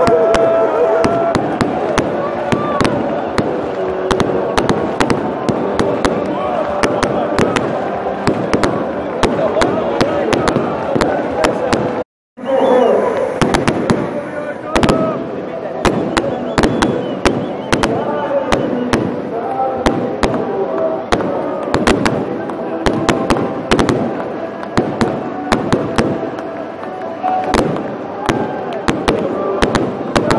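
Firecrackers cracking in quick, irregular succession over a large crowd of football supporters singing and chanting. The sound drops out completely for a moment about twelve seconds in.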